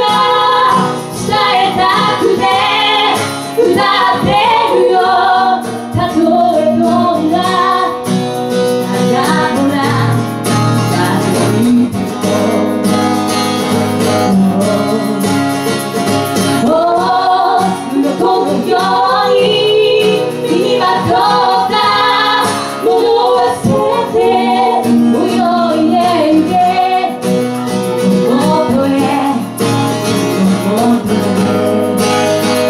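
Live music: a woman singing a melody into a microphone, accompanied by guitar, phrase after phrase with short breaths between.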